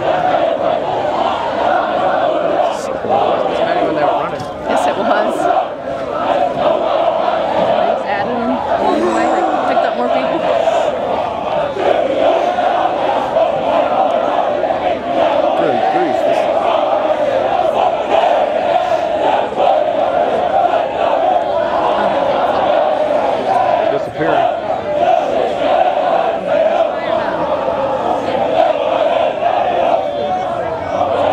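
Many voices shouting and chanting together in a steady, loud din with no pauses: a formation of Marine recruits calling running cadence.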